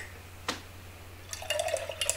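A paintbrush being swished and rinsed in a glass jar of water. One light click comes about half a second in, and from about halfway through there is a quick run of small clinks against the glass.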